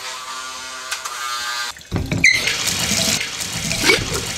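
A steady hum for about two seconds, then shower water running with an even hiss, starting suddenly about two seconds in, with a brief squeak near the end.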